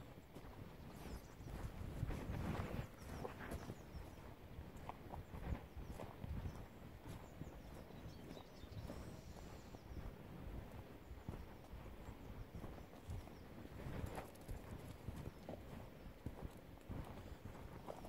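Footsteps of boots tramping along a wet, muddy track, a steady run of soft thumps, mixed with cloth rustling close to the microphone.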